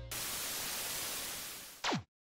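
Television static hiss that fades slightly, ending near the end in a short falling sweep as the set switches off, then cutting out.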